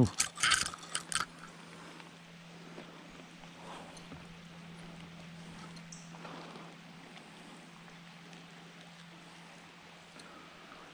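A few quick splashes in the first second or so, a smallmouth bass thrashing in a landing net at the water's surface. After that, faint, even shallow-creek ambience with a steady low hum.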